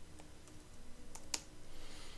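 A few faint computer keyboard keystrokes as a terminal command is edited and entered. The loudest tap comes about a second and a half in.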